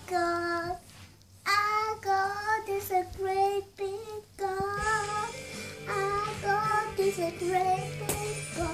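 A young child singing a tune in short phrases, with brief pauses between them; about five seconds in, a low steady hum comes in under the singing.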